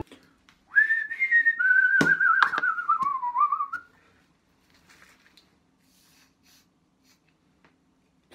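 A man whistling a short, wavering phrase for about three seconds, the pitch sagging lower toward the end, with two sharp knocks about two seconds in. Only faint handling sounds follow.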